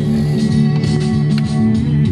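Music playing through the speakers of a Grundig Majestic Council console radio, tuned to a station.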